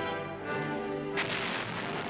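Orchestral music, then about a second in a single blast from a saluting field gun, its rumble dying away slowly as the music gives way.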